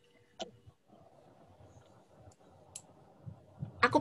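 Quiet room tone with two short, sharp clicks, the first about half a second in and the second near three seconds.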